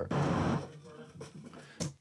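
City ambience sound effect (light traffic and street background) playing back, cutting off about half a second in where the clip was split at the scene change, leaving a much fainter background. A short click comes just before the end.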